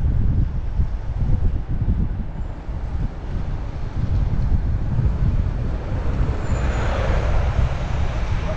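Wind buffeting the microphone of an action camera riding a bicycle through city traffic: a steady low rumble, with traffic noise under it. A hiss swells briefly about seven seconds in.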